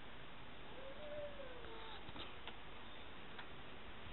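Steady background hiss, with one faint animal call about a second in that rises and then falls in pitch over about a second. A few faint ticks follow.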